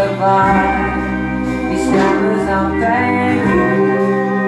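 Live band playing a song, with a sung lead vocal over electric and acoustic guitars, keyboard and a steady bass line.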